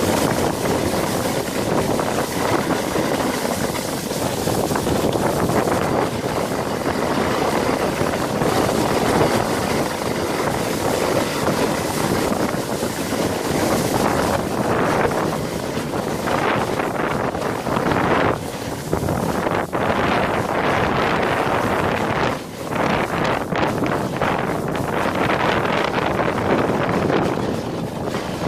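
Sled sliding fast down a packed-snow toboggan run: a steady scraping hiss of the sled on the snow, mixed with wind on the microphone. It gets rougher and more uneven in the second half, with a couple of short drops where the sled eases off.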